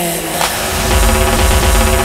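Melodic techno from a DJ mix: a synth line slides down in pitch at the start, then a heavy bass and steady synth chords come in about half a second in.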